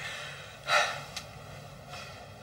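A person's single short, sharp breath about two-thirds of a second in, over quiet room tone, with a faint click shortly after.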